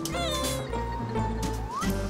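Background music with a short cat meow sound effect just after the start, followed by a held note and a rising glide near the end.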